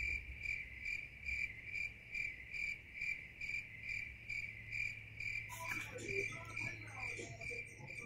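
Insect chirping steadily in a regular rhythm, a little over two high-pitched chirps a second, cricket-like.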